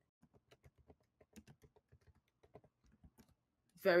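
Typing on a computer keyboard: a quick, irregular run of faint key clicks.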